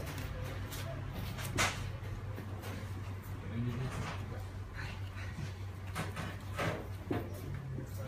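Knife and hands working a raw leg of lamb on a wooden butcher's block: quiet cutting and handling, with a few sharp knocks as the joint and knife touch the board, the loudest about a second and a half in. A steady low hum sits underneath.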